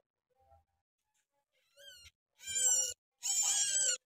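Eight-day-old bar-winged prinia (ciblek) nestling calling while it is handled for ringing. A short rising chirp comes about two seconds in, then two loud, high calls near the end.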